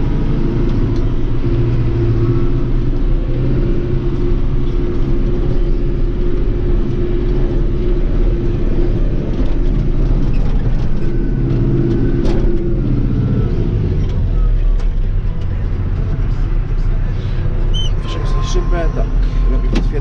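Tractor engine running steadily under load, heard from inside the cab as the tractor pulls a loaded silage trailer up onto a silage clamp.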